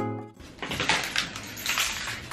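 Acoustic guitar music stops abruptly, followed by soft rustling and small crackles of a handheld camera being moved.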